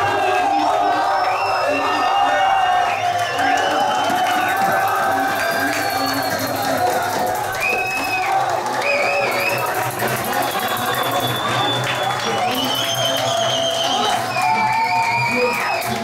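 A crowd of football fans cheering, shouting and clapping in celebration of a goal, mixed with music, dense and unbroken throughout.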